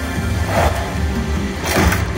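Money Link: The Great Immortals slot machine playing its game music, with held low tones. Two short thuds come from the machine, about half a second in and again near the end.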